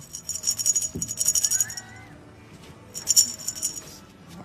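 Dry dog kibble rattled inside a clear plastic container, shaken in two bouts of fast, bright rattling, a longer one early and a shorter one near the end.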